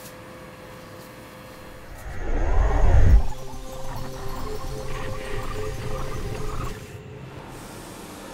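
A low steady hum, then about two seconds in a swelling whoosh transition effect that rises and falls in pitch with a heavy low rumble. It leads into a short music sting of held notes that stops about a second before the end.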